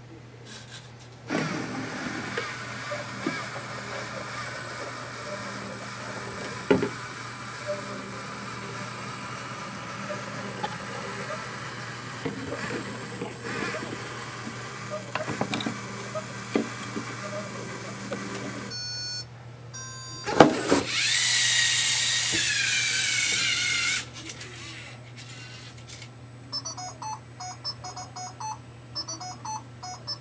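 Running sounds of a homemade Rube Goldberg machine: a steady mechanical hum with scattered clicks and knocks, then a loud knock about twenty seconds in followed by a falling whoosh for a few seconds. Near the end come repeated short electronic beeps.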